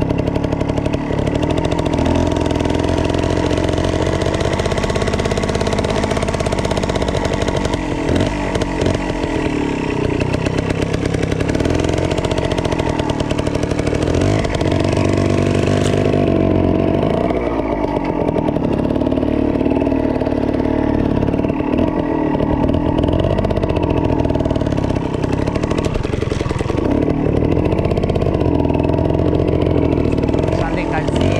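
Small two-stroke trial motorcycle engine running as the bike is ridden slowly, its pitch rising and falling again and again with the throttle.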